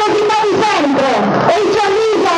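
A high-pitched voice carried over a loudspeaker, in continuous phrases with notes held and sliding in pitch.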